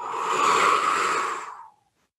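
A woman exhaling forcefully through her mouth as part of a guided breathing exercise: one long blown-out breath that swells and then fades out after about a second and a half.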